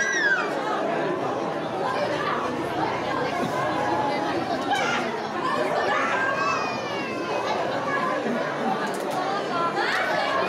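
Crowd chatter: many voices talking over one another, with children's high calls rising above it a few times.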